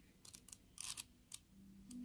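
A few short papery rustles and clicks: the pages of an oracle deck's guidebook being handled and turned.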